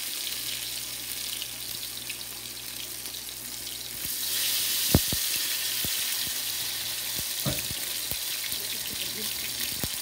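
Brinjal slices shallow-frying in oil in a cast-iron pan: a steady sizzle that grows louder about four seconds in, when a second slice goes into the oil. A sharp click comes about a second later, with a few lighter pops after.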